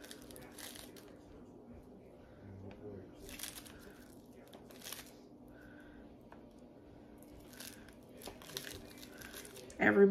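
Faint crinkling and rustling of a paper cheese wrapper in several short bursts while a wedge of brie is cut with a knife on it.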